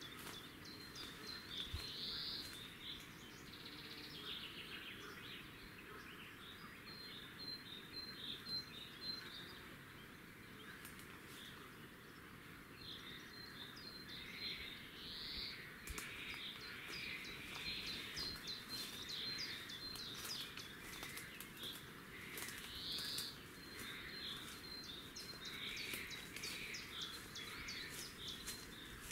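Birds calling in runs of short, high chirps, with a few warbled phrases, over a faint steady outdoor background hiss.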